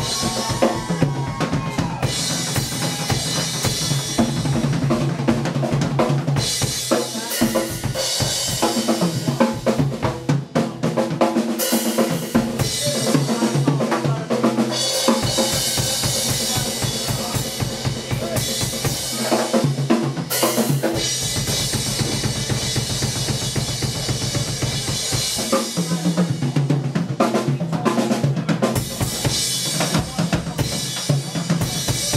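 Live blues-rock band playing, with the drum kit (kick, snare and cymbals) prominent in the mix over electric guitar.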